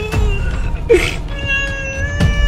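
A man crying out in long, high, steady-pitched wails that drop in pitch as they break off: one wail tails away at the start, a short sob comes about a second in, and a new wail begins near the end.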